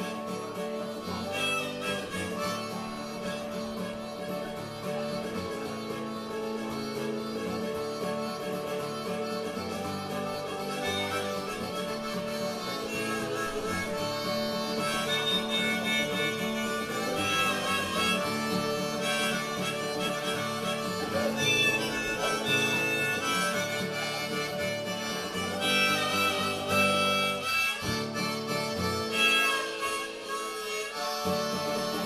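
Harmonica playing an instrumental break over strummed acoustic guitar.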